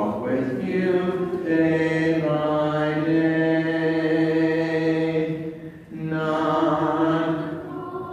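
Voices singing the closing hymn in slow phrases of long-held notes, with a short break for breath about six seconds in.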